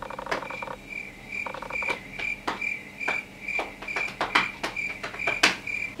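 An edited-in sound effect or music: a short, high beep repeating about three times a second over light clicks, with two brief buzzy tones in the first two seconds.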